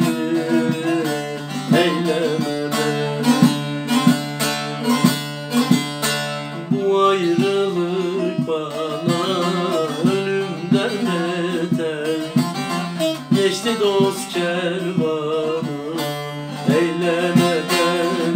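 Bağlama (Turkish long-necked saz) played with a plectrum: a quick plucked melody over a steady low ringing note from the open strings, an instrumental passage between sung verses of a Turkish folk song.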